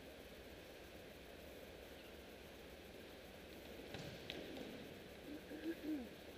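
Faint sounds of a volleyball practice heard across a large arena: a steady low hum, a couple of soft thumps about four seconds in, and faint distant voices near the end.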